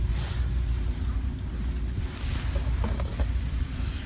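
Steady low rumble of store background noise on a handheld camera's microphone, with faint handling rustles as a small cardboard product box is picked up near the end.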